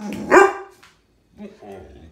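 Large brown dog giving one loud bark-yowl that rises sharply in pitch, a protest vocalisation from a dog throwing a fit over being made to give up his toy.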